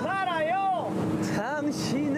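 A man singing a Korean love-song line loudly with long, wavering held notes and a short break about a second in, over the steady noise of a motorboat's engine and wind.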